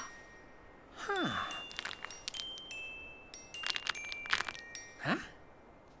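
Sparse chime and glockenspiel tinkles of a cartoon music score, sustained high bell tones with clusters of quick tinkles. A falling pitched sound about a second in and a questioning 'huh?' near the end.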